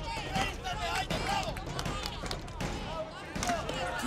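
Several people shouting over one another, with a few short knocks of blocks being thrown down and stacked on the platform.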